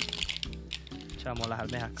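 Clams dropped one after another from a glass bowl into a pan of sofrito, giving light clicks and clinks of shell on glass and steel, over background music and a voice.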